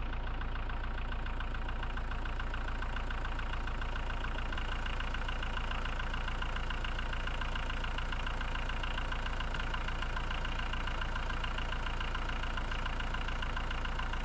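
Case IH Farmall compact tractor's diesel engine idling steadily, running as the donor vehicle for a jump-start through jumper cables.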